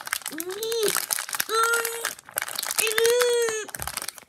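A foil-plastic blind bag crinkling and rustling as hands twist and pull at it, trying to tear it open without scissors. A girl's voice makes three drawn-out, steady-pitched straining sounds over the crinkling.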